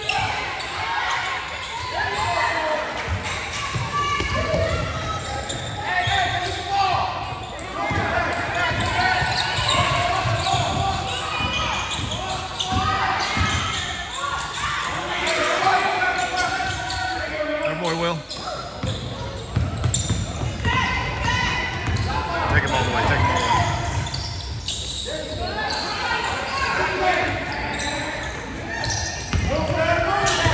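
Basketball game in an echoing gymnasium: a ball bouncing on the hardwood court amid voices of players and spectators.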